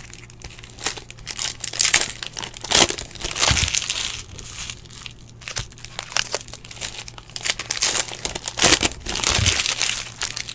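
Foil wrappers of Panini Prizm football card packs crinkling and tearing as the packs are handled and ripped open, in several spells of a second or so each with sharp crackles between.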